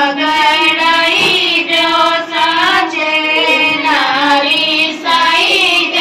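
A high female voice singing a Gangaur folk song in long held, wavering notes, with brief breaks between phrases.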